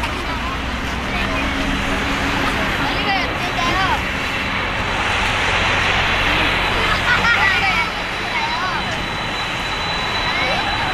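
Boeing 747-400 jet engines at taxi power: a steady roar with a low hum, joined about halfway through by a thin, steady high whine as the airliner turns. People's voices are heard over it.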